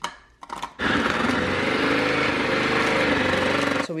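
Electric food processor motor running steadily for about three seconds, chopping frozen shrimp, then cutting off suddenly. A few light knocks come before it as the frozen shrimp drop into the chute.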